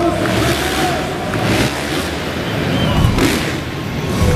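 Dirt bike engine revving in several surges as a freestyle motocross rider accelerates toward the takeoff ramp, echoing in a large exhibition hall.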